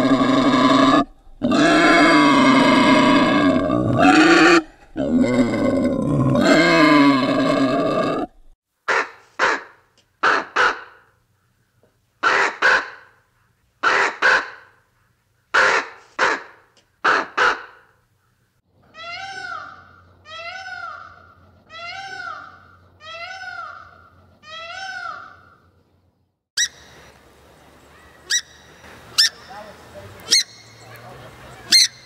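A boar calling loudly for about eight seconds in three long stretches. Then a crow gives a run of short caws, mostly in pairs, followed by six evenly spaced drawn-out caws. A few sharp clicks come near the end.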